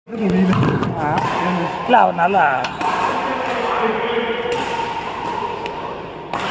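People's voices talking and calling out in a large, echoing sports hall, with a loud pitched call about two seconds in.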